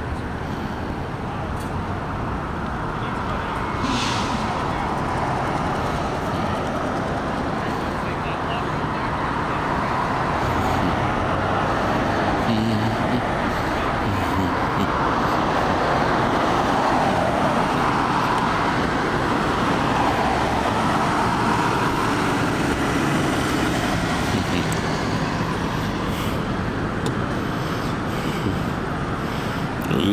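Road traffic noise: a steady rush of cars passing on a multi-lane street, swelling as vehicles go by, loudest through the middle.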